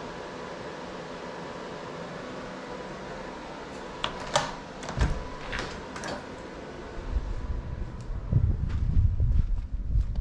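Steady hum of cooling fans and appliances running in a small room, with a few fixed tones in it. About four seconds in come several sharp clicks and knocks as a keypad deadbolt and door handle are worked and the door opens. From about seven seconds, an irregular low rumble on the microphone grows louder toward the end.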